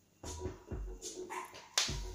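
Music from a vinyl record on a Technics turntable, played through a Yamaha A-500 amplifier and loudspeakers. It cuts in suddenly about a quarter second in, with deep drum hits and a sharp loud hit near the end.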